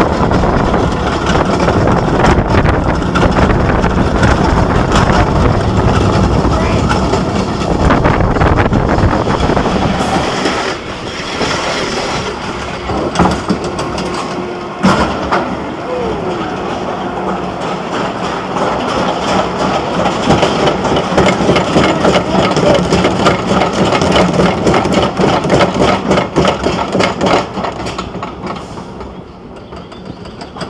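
Arrow suspended roller coaster train running along its steel track, with loud wheel and wind noise for the first ten seconds. It then quietens, and from about fifteen seconds in a steady, rapid clicking runs as the train is pulled up a chain lift hill.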